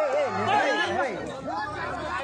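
Spectators' voices talking and calling out at once, overlapping into crowd chatter.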